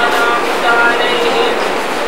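A man's voice chanting an Arabic supplication in drawn-out, melodic phrases over a steady hiss.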